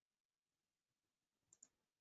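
Near silence, with a pair of faint quick clicks about three-quarters of the way through: a computer mouse being clicked.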